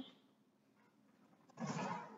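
Near silence: room tone, broken about one and a half seconds in by a short breathy sound from a person, about half a second long.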